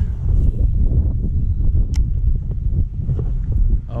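Wind rumbling steadily on the microphone, with one sharp click about two seconds in.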